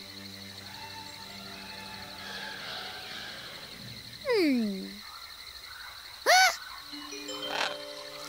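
Cartoon soundtrack: soft background music over a steady high jungle trill. About four seconds in comes a falling pitched 'ooh'-like glide, and about two seconds later a short, loud rising-and-falling chirp.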